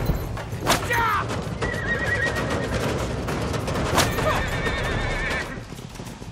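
A horse neighing over the rumble of horses galloping and pulling a cart, with two sharp cracks, one under a second in and one about four seconds in.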